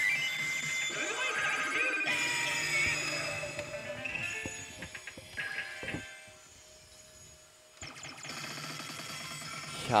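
Yoshimune 3 pachislot machine playing its electronic effect music and jingles during a lottery effect, with a few sharp clicks about five to six seconds in; the sound drops away for a couple of seconds, then resumes.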